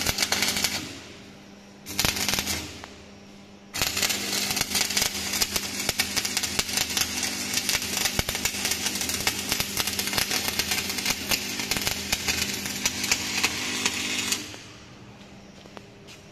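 Manual metal arc (stick) welding: the electric arc crackling and sizzling. It is struck twice briefly near the start, then held in one continuous run of about ten seconds before breaking off.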